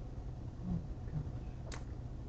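Faint, steady low hum, with a faint short click near the end.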